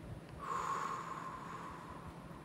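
A breath sniffed in sharply through the nose, starting about half a second in and trailing off.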